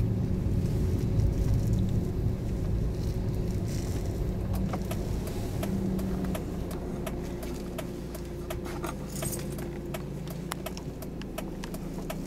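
Inside a moving car: steady low engine and road noise with many light clicks and rattles, easing a little in the second half.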